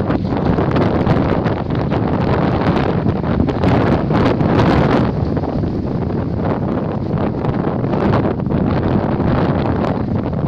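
Strong wind buffeting a phone microphone in a steady, loud rush, with ocean surf breaking on a pebble beach underneath.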